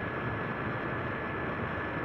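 Steady background noise: an even hiss with a faint constant high-pitched whine running through it, and no other event.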